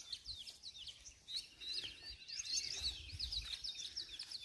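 Small birds chirping: a steady run of quick, high chirps that keeps repeating.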